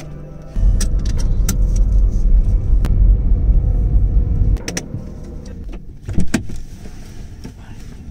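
Car engine running, heard from inside the cabin: a loud low rumble that stops abruptly about four and a half seconds in. After it the cabin is quieter, with a few sharp clicks and knocks.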